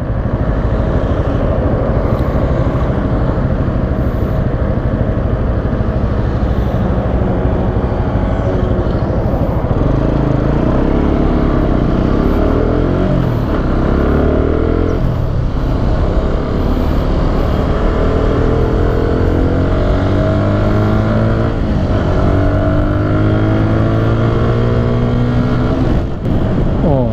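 Benelli 150S single-cylinder four-stroke engine accelerating hard through the gears, its revs climbing in rising pulls that drop back at two upshifts, in the middle and near the end. The engine runs over steady wind noise on the microphone.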